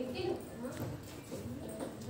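Indistinct voices talking, with a few short sharp knocks among them.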